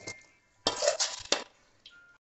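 A metal spoon scraping and clinking against a wide metal pan as it turns over spice-coated chunks of raw mango. A short burst at the start, then a longer stretch of scraping with a few sharp clinks from under a second in to about a second and a half.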